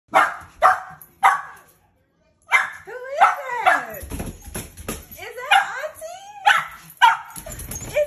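Young dog barking in excitement at a familiar person: three sharp barks, a short pause, then a fast run of barks mixed with high whines and yelps that slide up and down in pitch.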